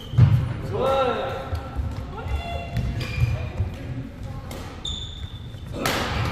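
Doubles badminton rally on a wooden indoor court: players' feet thud and shoes squeak on the floor. A short voice call comes about a second in, and a sharp crack near the end.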